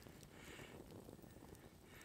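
Near silence: faint outdoor background hush.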